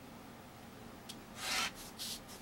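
A rotary cutter rolling through fabric against a self-healing cutting mat along an acrylic ruler: one short stroke about one and a half seconds in.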